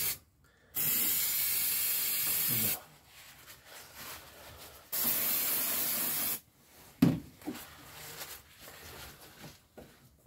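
Aerosol can of brake cleaner sprayed in two long steady hissing bursts, about two seconds and then a second and a half, followed by a sharp knock and light handling noises.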